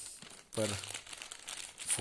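Plastic chips packet crinkling as it is handled in both hands.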